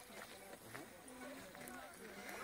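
Quiet, indistinct talking of people nearby, with faint hoofbeats of a horse cantering on a sand arena.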